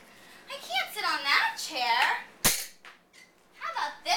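A young performer's voice speaking expressively with wide swings in pitch, broken by one sharp smack about two and a half seconds in.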